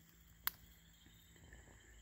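Near silence in the woods, broken by one sharp click about half a second in.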